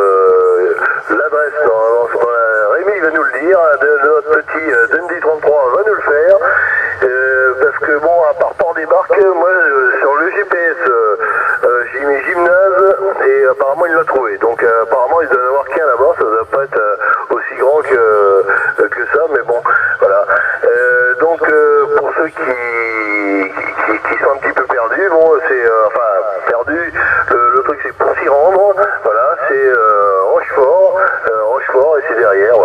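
A station's voice received on a Yaesu FT-450 transceiver in lower sideband on CB channel 27, talking without pause through the radio's speaker with a narrow, band-limited sound.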